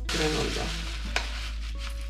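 Plastic snack bag crinkling and dry granola pouring into a bowl: a sharp rustling burst at the start that fades within about half a second, then a single click. Soft music runs underneath.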